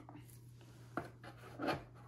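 Gloved hands handling a plastic conical tube: a sharp click about a second in as the screw cap is seated, then a short rub as the tube is slid into a cardboard rack.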